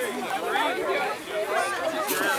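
Background chatter of people talking, with the words indistinct.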